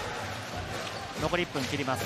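Basketball being dribbled on a hardwood court, over a steady arena crowd murmur.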